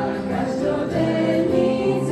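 Youth choir singing a hymn.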